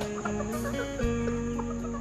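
Several short chicken clucks over steady background music.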